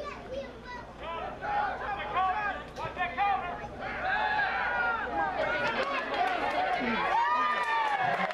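Many voices of football spectators and sideline players shouting and calling out over one another during a play, getting louder about halfway through.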